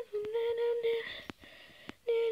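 A person humming a few short held notes in the first second, then two light clicks in the second half.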